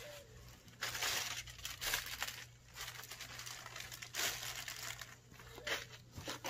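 Plastic packaging and bubble wrap crumpled and rustled by hand in irregular bursts, loudest about a second in.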